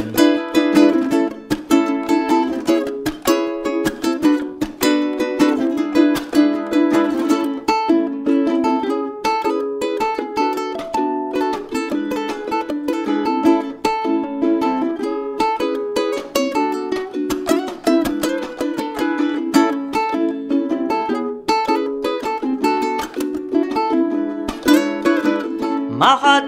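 Solo cutaway acoustic ukulele strummed in a steady rhythm, cycling through an A, C#m7, Bm7, E7 chord progression.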